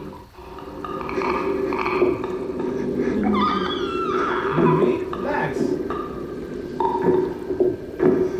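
Horror TV soundtrack: a low steady drone under creature-like vocal noises whose pitch slides up and down in the middle, with a few short sharp sounds near the end.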